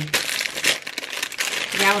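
Clear plastic packaging bag crinkling as it is handled and pulled open by hand, in a dense run of irregular crackles. A woman's voice starts talking near the end.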